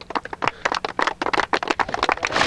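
A small group clapping: many quick, irregular claps that start just after the winner's name and keep going.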